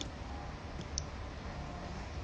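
Quiet room tone with a low hum and two faint, light clicks about a second apart.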